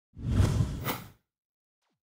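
An edited-in whoosh sound effect, about a second long, that swells up and then fades out.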